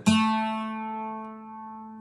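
A single note plucked on a guitar's third string at the second fret (an A), ringing out and slowly fading.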